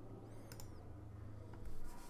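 Quiet room tone with a steady low hum, broken about half a second in by a faint click and a brief faint high squeak, with a few small clicks near the end.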